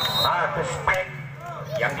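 Volleyball rally: two sharp hits of the ball, about a second apart, under a man talking and crowd voices.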